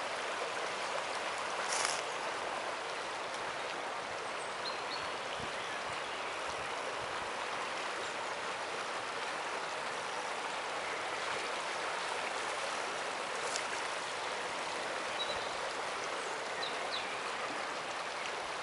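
River water flowing and rippling, a steady rush of running water.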